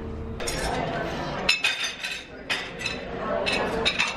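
Breakfast-room clatter: dishes and cutlery clinking, with several sharp clinks, over background chatter.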